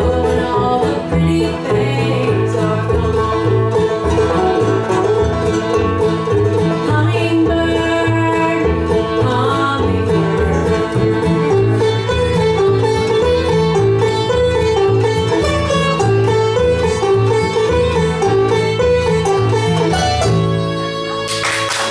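Bluegrass band playing live: banjo, acoustic guitar, fiddle and upright bass, with a steady walking bass line under the picked strings.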